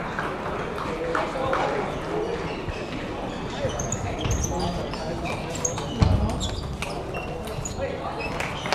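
Table tennis rally in a busy hall: a celluloid ball clicks sharply off the bats and table over a steady murmur of voices, with short high squeaks from the players' shoes on the floor. A heavy thump comes about six seconds in.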